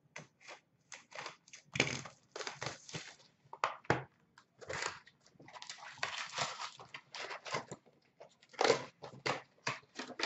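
Trading card box and packs being torn open and handled by hand: irregular tearing, crinkling and rustling of cardboard and wrapper, with small knocks. It is loudest about two seconds in and again near the nine-second mark.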